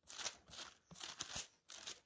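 Faint rustling and crinkling of thin Bible pages being turned, in several short bursts.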